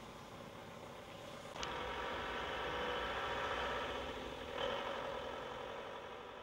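An engine running steadily, stepping up in level with a click about a second and a half in.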